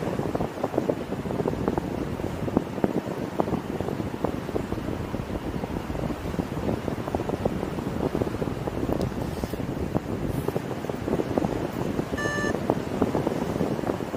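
Airflow buffeting the microphone of a paraglider in flight: a steady rough rush of wind. About 12 seconds in there is one short electronic beep.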